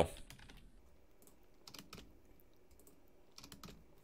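Faint keystrokes on a computer keyboard, in two short bursts of a few clicks each, about two seconds in and again near the end, as arrow operators are typed into code.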